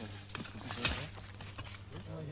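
A few irregular sharp knocks over a low steady hum.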